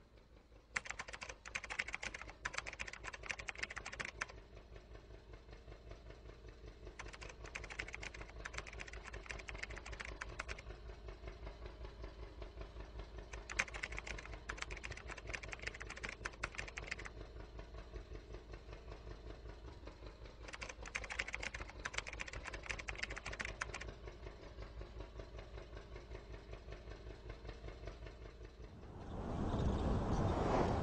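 Rapid typing clicks in four bursts of about three seconds each, spaced a few seconds apart, over a steady low rumble. Near the end a louder rushing sound comes in.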